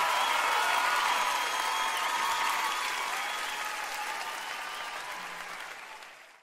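Live concert audience applauding and cheering after a song, fading out steadily.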